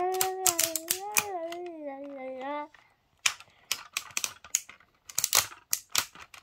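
A young child sings a few long, gliding notes, which stop about two and a half seconds in. Under the singing and after it come sharp clicks and snaps of plastic parts as a toy transforming robot is folded and locked together.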